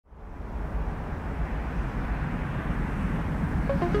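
A low rumbling wash of noise fades in from silence and swells slowly and steadily. Electronic music with short plucked notes enters just before the end.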